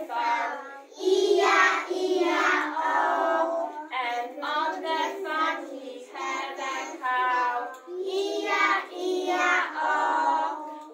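A group of preschool children singing a song in English together, unaccompanied, in phrases with short breaths between them.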